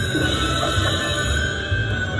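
Buffalo Diamond slot machine playing its free-games bonus music, held tones over a pulsing bass, as it awards 5 more free games in a retrigger.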